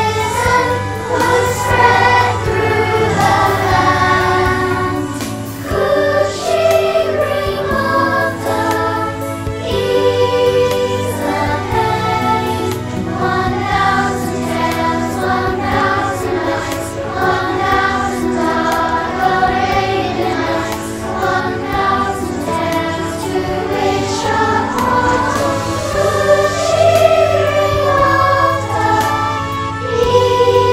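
A group of children singing a song together as a choir.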